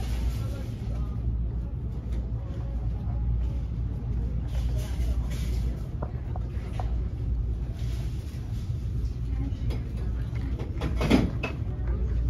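Indoor retail-store ambience: a steady low hum with indistinct voices in the background. A louder voice comes briefly about eleven seconds in.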